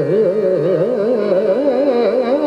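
Male vocalist singing a fast, wavering ornamented line in Hindustani classical style over sustained harmonium tones.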